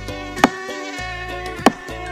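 Background music with a high, mosquito-like buzzing over it, broken twice by sharp thumps, about half a second in and near the end.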